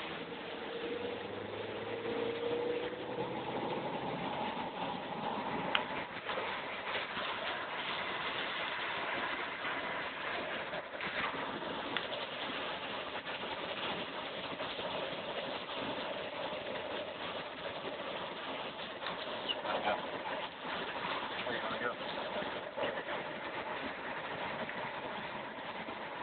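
Steady noise of heavy storm rain and wind on a moving car, heard inside the cabin, with a few sharp clicks and knocks scattered through it.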